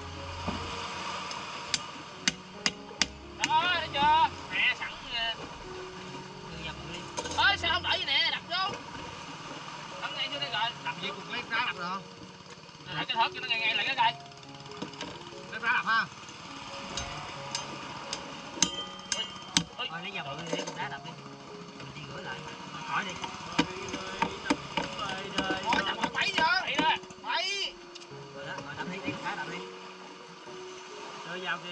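A large knife chopping into a grouper on a plastic cutting board set on rock: sharp knocks that come in clusters several times, with people's voices between.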